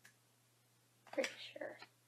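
A woman's short, breathy vocal sound, a sigh or whispered mutter, about a second in, after a second of near silence.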